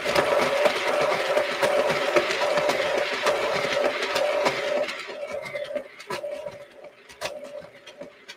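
A spinner turntable spinning a freshly poured acrylic canvas, giving a steady whir with a constant hum. It drops to a lower level about five seconds in, with scattered clicks after that.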